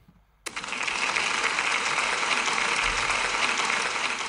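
Applause from many people clapping, a steady dense clatter that starts suddenly about half a second in.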